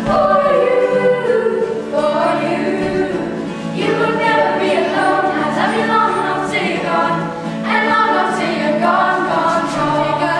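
A children's vocal group singing a medley together in several-part harmony, with held low notes under the moving melody.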